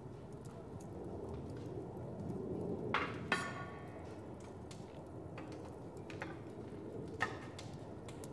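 Crockery and dishes being gathered onto a tray from a glass-topped table: a few faint clinks and knocks, with one brighter ringing clink about three seconds in.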